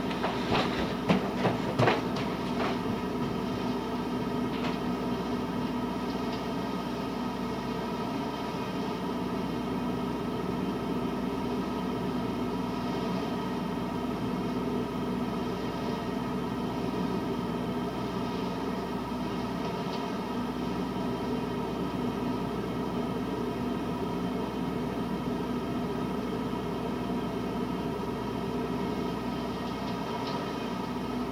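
Truck-mounted Tarrant leaf vacuum unit running with a steady, even drone, heard through window glass. A few sharp knocks come in the first couple of seconds.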